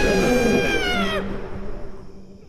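A long, loud, high-pitched scream from an animated creature, held steady and then bending down in pitch before breaking off about a second in. A faint low hum is left behind.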